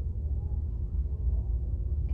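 A steady low background rumble, with no other event standing out.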